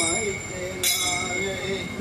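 Metal percussion, struck sharply about a second in, with high ringing tones that hang on between strikes. Under it, men's voices chant.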